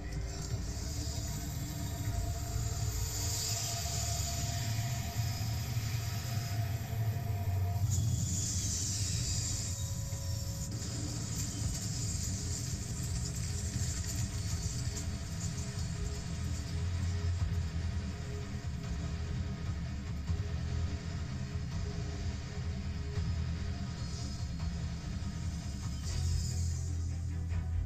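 Science-fiction film soundtrack played through a TV and picked up off its speaker: music over a continuous heavy low rumble, with hissing rushes of noise about three and eight seconds in.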